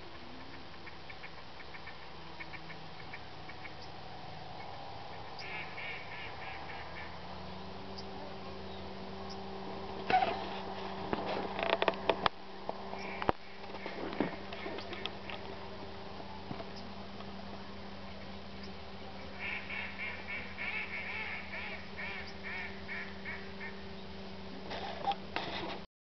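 A flock of ducks quacking across a pond, with runs of rapid quacks about six seconds in and again near the end. A steady low hum sets in about seven seconds in, and a few sharp knocks come around the middle.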